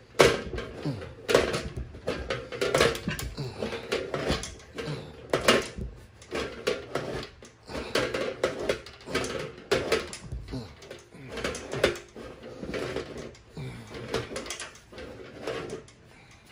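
French horn rotary valve levers pressed and released by hand, giving a run of irregular clicks and clacks from the valve mechanism.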